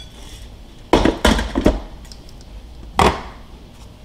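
Air fryer pan and its handle knocking against a ceramic bowl as crispy fries are tipped out into it: a quick cluster of sharp clatters about a second in, and a single knock about three seconds in.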